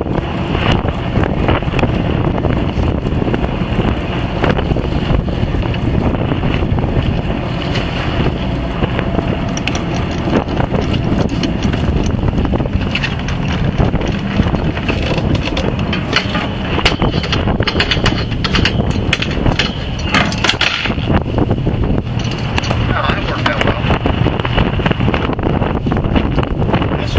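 Wind buffeting the microphone over a boat's engine running steadily at sea. Partway through there is a run of knocks and rattles as the anchor and its chain come up onto the bow.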